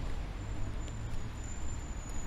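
Road traffic: a steady wash of car engine and tyre noise with a low rumble, and a thin high whine running through it.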